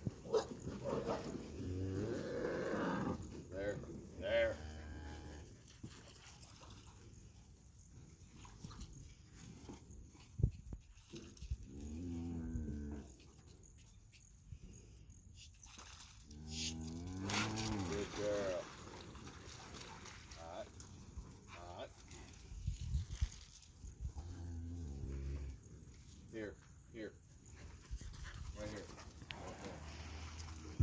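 Cattle mooing repeatedly, long low calls a few seconds apart from a herd being pushed around by a stock dog.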